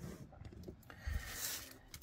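Quiet handling noises: cardboard trading-card boxes pushed and set down on a playmat, with a soft thump about a second in, then a brief rustle as hands take hold of stacks of foil booster packs.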